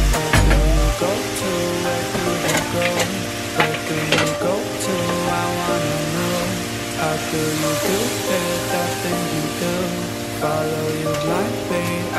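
Marinated flank steak sizzling in a frying pan, with a few clicks and scrapes of a utensil as the meat is turned. Background music with a bass line plays throughout, and a deep bass hit sounds in the first second.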